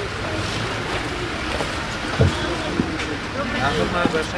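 Steady wind noise on the microphone, with faint voices in the background.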